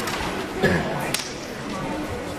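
Two sharp smacks over a background murmur of voices, the first about half a second in and louder, the second about half a second later.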